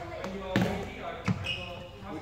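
Badminton racket strikes on shuttlecocks in a reverberant hall: three sharp hits, the loudest about half a second in and just past one second.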